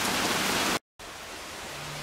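Heavy rain pouring down steadily as a dense hiss, which cuts off abruptly less than a second in and gives way to a much quieter steady hiss.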